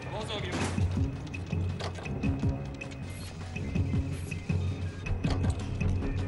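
Tense film-score music with a steady low pulsing beat and repeated short percussive hits, from a movie soundtrack. A brief vocal sound, a shout or grunt, comes about half a second in.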